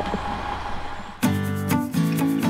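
A low steady hum for about a second, then background music with plucked acoustic guitar notes comes in.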